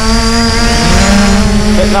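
Hubsan Zino quadcopter's brushless motors and propellers spinning up for take-off: a loud, steady multi-tone whine over a low rumble, its pitches shifting about a second in.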